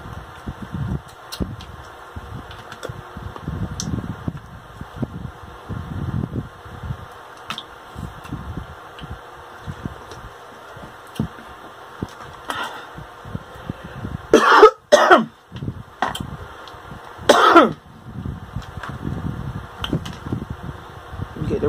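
Close mouth sounds of eating king crab: chewing and sucking meat from the shell, with small clicks of shell. About fourteen seconds in come two loud throat-clearing coughs close together, and a third a couple of seconds later.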